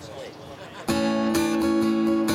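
Faint voices of people talking. Then, a little under a second in, acoustic guitar chords strummed loudly with a steady rhythm as the song kicks off.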